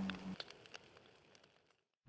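The tail of a title-card sound effect: a low steady hum cuts off about a third of a second in, followed by a few faint crackles that fade away.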